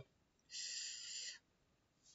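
A man's breath drawn in sharply between sentences, lasting just under a second, a soft hiss with no voice.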